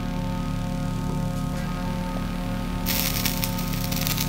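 Background music with steady sustained tones. About three seconds in, a hissing sizzle with crackles starts as water dripped onto a burning candle wick puts the flame out.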